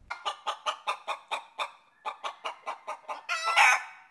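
Chicken clucking in a fast, even run of short clucks, about seven a second, with a short break about two seconds in, then a louder, drawn-out call near the end.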